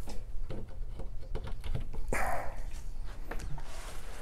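Light scattered clicks and knocks of a power cord and plug being handled while it is plugged into a wall outlet, with a short breathy rush of noise about two seconds in, over a steady low room hum.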